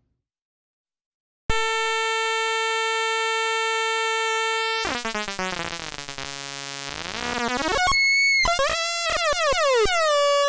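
Rakit Mini-APC (Atari Punk Console: two 555-type oscillators in a 556 chip) starting about a second and a half in with a steady buzzy tone. It then sweeps down and back up in pitch and breaks into warbling, stepping tones as its two knobs are turned.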